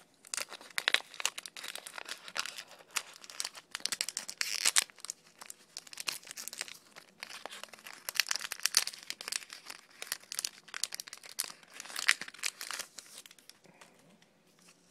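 A Pokémon trading-card booster pack's metallic plastic wrapper crinkling and tearing as it is opened by hand, in a continuous run of uneven crackles.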